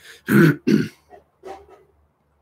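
A man clearing his throat: two strong rasps about half a second in, then two softer ones before it stops.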